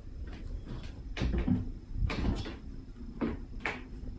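About four soft knocks and rubs of an apple and an orange being picked up and set down on a tabletop.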